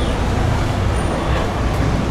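Steady street traffic noise: a continuous low rumble of road vehicles going by.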